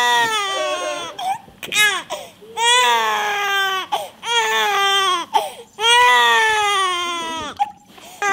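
Infant crying hard in a series of long wails, about four of them with a short one between, each falling in pitch, with brief catches of breath between cries.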